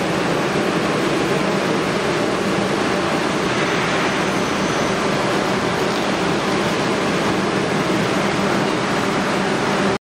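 Heat shrink-wrapping tunnel's blower running: a steady, even rush of air with a low hum underneath.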